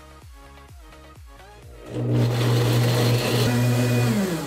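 High-powered countertop blender starting about two seconds in and running at full speed with a steady loud hum, grinding breakfast cereal and water into a slurry.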